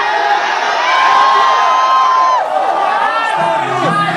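Live-venue crowd cheering and shouting, many voices overlapping, with one long held call about a second in.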